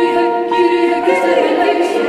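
Mixed choir of men and women singing sacred music a cappella, holding sustained chords that move to new notes about a second in.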